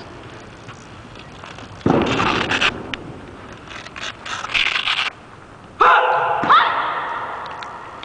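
Two sudden bursts of noise, then a voice shouts out twice with a rising second call, ringing on in the large hall as it fades.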